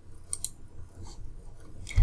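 Two computer mouse clicks in quick succession, about half a second in, over a faint low hum.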